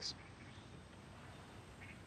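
Quiet outdoor ambience: a faint, even background hiss. A short spoken word ends at the very start.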